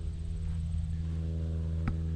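A steady low mechanical hum made of several even tones, with a faint click near the end.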